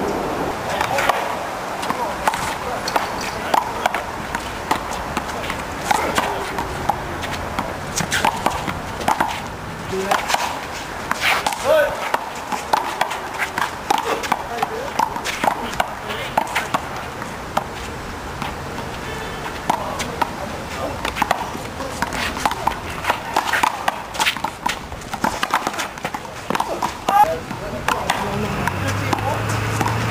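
A small rubber handball being slapped by hand and smacking off the concrete wall and court: sharp hits at irregular intervals, with voices of players and onlookers underneath.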